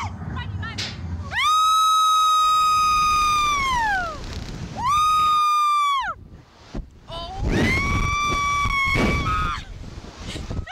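Riders on a slingshot ride screaming as they are flung into the air: a long high scream that drops in pitch at its end, a shorter one, then another after a brief gap.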